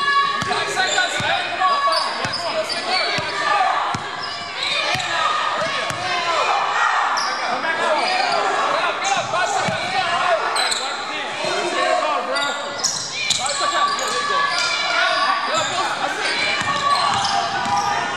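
A basketball dribbling on a hardwood gym floor, with scattered thuds and squeaks of play amid indistinct shouting and chatter from players, all echoing in a large gym.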